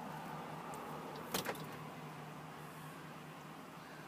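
6.6-litre gas V8 idling steadily, heard as a low, quiet hum inside the truck's cab, with one brief click about a second and a half in.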